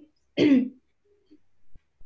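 A person clears their throat once, briefly, about half a second in.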